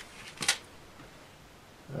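Quiet room with one brief, soft hiss-like handling sound about half a second in, as a needle is changed in a phonograph's soundbox.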